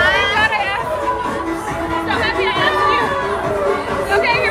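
A woman talking in short bursts over loud rap music, with crowd chatter behind.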